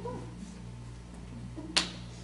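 A pause with a steady low electrical hum and one sharp click about three-quarters of the way through.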